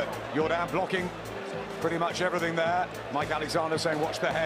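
Broadcast commentary speech over background music with steady held notes.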